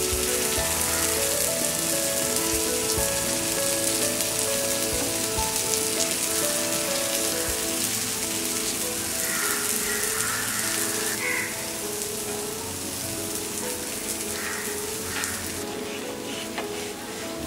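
Green moong dal chilla frying on a pan: a steady sizzling hiss of hot oil with fine crackles. Background music with held notes plays under it.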